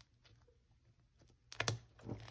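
After a second and a half of near silence, a quick cluster of sharp clicks and taps as hands press and close a clear plastic cash-envelope binder.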